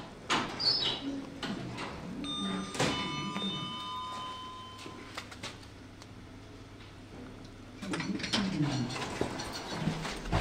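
Modernised Kone lift giving a two-note arrival chime a little over two seconds in, each note ringing on for a couple of seconds, with the clicks and rumble of its sliding doors around it.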